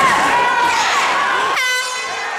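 Fight crowd shouting and yelling. About one and a half seconds in, a single steady horn blast sounds as the referee stops the fight.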